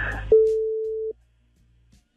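A single steady electronic beep, under a second long, starting about a third of a second in and cutting off abruptly, followed by near silence: a censor bleep over the caller's answer, most likely the name of the workplace.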